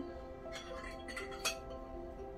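Soft background music with steady held notes, and a few light clinks of a spoon and fork against a plate between about half a second and a second and a half in.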